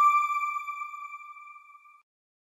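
A single bell-like electronic chime, the TV channel's logo sting. It rings once and fades away over about two seconds.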